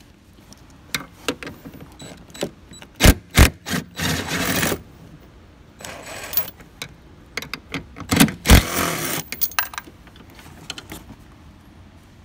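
Hand tools working on the soft-top frame's 10 mm mounting bolts. Scattered metal clicks, with a pair of sharp knocks about three seconds in and another pair about eight seconds in, each followed by a short stretch of rasping ratchet clicking.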